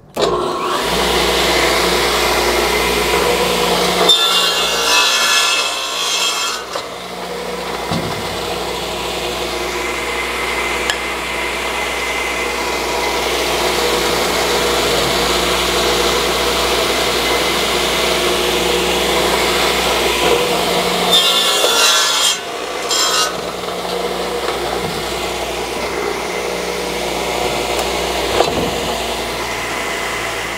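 Northfield Uni-Point radial arm saw running steadily, its blade pulled through a wooden board twice, about four seconds in and again around twenty-one seconds in, each crosscut a louder, rougher rasp over the motor's steady hum.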